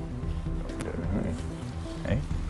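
Silverback gorilla giving a low, contented gurgle while having his back stroked, a sign of contentment, over background music.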